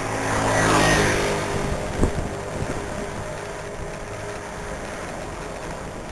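A motor vehicle passes close by, its engine note swelling to a peak about a second in and falling in pitch as it goes. A sharp knock follows about two seconds in, then steady wind and road noise.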